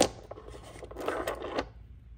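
Agate nodules clacking and rattling against each other in a plastic tub as a hand sets one down and picks out another: a sharp clack right at the start, then a short burst of clatter about a second in.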